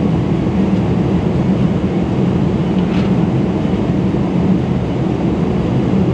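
Steady in-flight cabin drone of a Boeing 777-300ER at cruise: an even, low rumble of engine and airflow noise that holds constant throughout.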